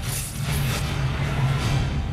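Movie trailer soundtrack: dramatic music over a deep, sustained low rumble, with a few short swishing sound effects.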